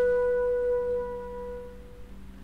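Alto flute holding one long, steady note that fades away near the end.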